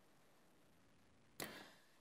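Near silence, with one brief faint rush of noise about a second and a half in.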